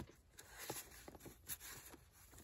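Faint rustling and soft taps of paper and card as a handmade ring-bound journal's tag and pages are handled, a few brief sounds spread through the moment.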